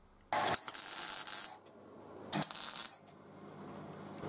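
Steel workpiece and pipe-ring pieces being handled, giving two short bursts of metallic scraping and clinking, the first about a second long and the second briefly past the middle.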